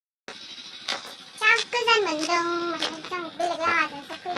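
A young woman's voice in long, held, gliding notes, not clear words, over a steady hiss of wind on the phone microphone. The sound cuts in after a brief moment of dead silence at the very start.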